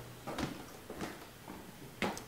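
A man drinking from a small glass: a few faint gulps.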